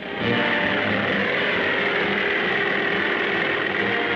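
Early autogyro's engine and propeller running, a steady drone with hiss that starts a moment in and holds unchanged.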